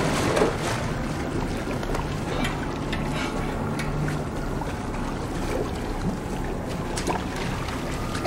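Steady rushing, churning water noise with a faint low hum underneath.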